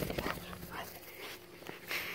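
Two big dogs at rough play, making soft play noises, with a brief whine about three-quarters of a second in.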